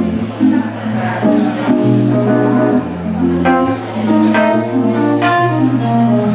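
Live funk band playing: keyboard chords over a sustained bass line that changes note about once a second, with no singing.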